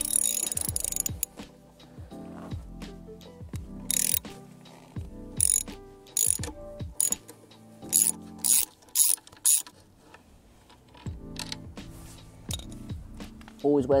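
Hand socket ratchet clicking as a bolt is loosened on a motorcycle's footpeg bracket: a long run of fast clicks at the start, then a series of short bursts of clicking, one per back-stroke of the handle.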